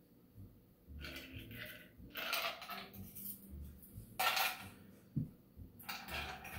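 Short clinks and rattles of ice and glassware as a stirred cocktail is strained from a mixing glass into a stemmed cocktail glass and the mixing glass is set down, with a sharp tap about five seconds in.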